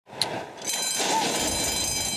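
Racetrack starting-gate bell ringing as the stall doors spring open and the horses break. The steady, high ring starts under a second in over a lower rumble.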